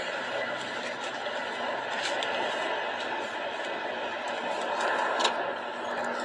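Steady noise inside a car cabin, an even rush with a faint hum under it. There is a faint click about five seconds in.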